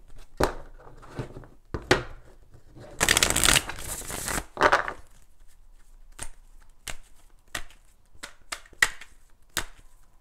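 A deck of tarot cards being shuffled by hand: the cards slide and tap against each other, with a longer rush of sliding cards about three seconds in, then a quick run of separate sharp clicks through the second half.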